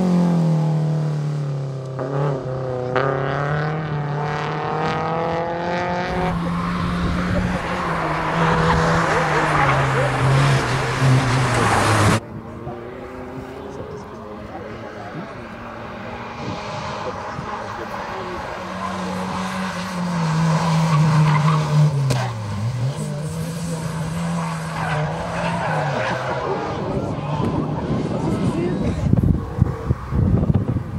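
Slalom race cars driven hard through a cone course, their engines revving up and down as they accelerate and brake between the cones, with tyres squealing. First a BMW 3 Series Compact passes close by. About twelve seconds in the sound cuts off suddenly to another car, quieter and farther off, doing the same.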